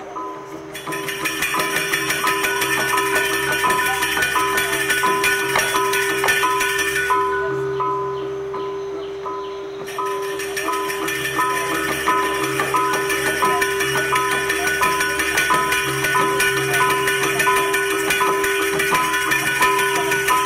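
Balinese gamelan playing: bronze metallophones and percussion over a steady beat, with a bright, shimmering top. The ensemble eases off about seven seconds in, then comes back in full around ten seconds.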